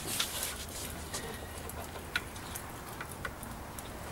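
Wood fire crackling in a fire pit: a few scattered sharp pops at uneven intervals over a low steady hiss.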